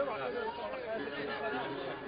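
Several people talking at once in a low background chatter, with no clear lead voice or music.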